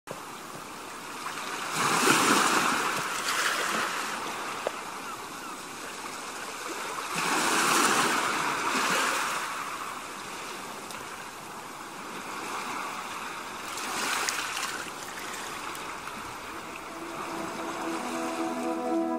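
Small waves washing against a rocky shore, swelling three times about six seconds apart. Music begins just before the end.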